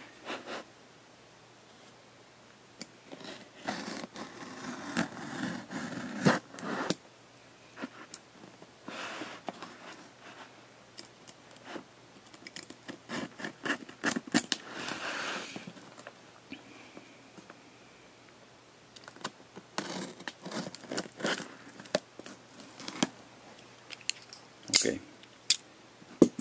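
Cardboard shipping box being opened: packing tape being cut and peeled, with cardboard scraping and rustling and sharp handling clicks, in irregular bursts with short pauses.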